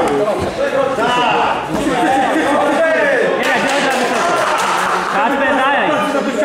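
Men's voices shouting over one another, loud and continuous, echoing in a large hall.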